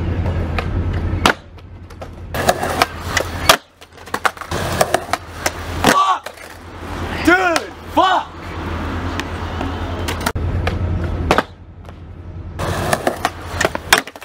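Skateboard wheels rolling over concrete in several separate stretches, each cut off abruptly, with sharp clacks of the board's tail popping and the deck slapping down. These are repeated attempts at a heelflip late shove-it off a concrete block.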